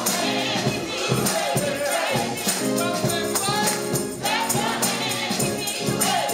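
Gospel singing by voices, backed by an organ, with a tambourine struck on a steady beat.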